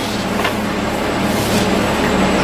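Inside the cab of a 2005 Country Coach Inspire diesel-pusher motorhome as it moves off slowly: its 400 hp Caterpillar C9 diesel makes a steady low hum that grows slightly louder, with a couple of light clicks.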